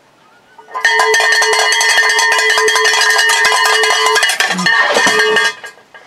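Handheld cowbell rung rapidly and continuously for about five seconds, a dense run of metallic clanks with a steady ringing pitch, starting about a second in and stopping shortly before the end.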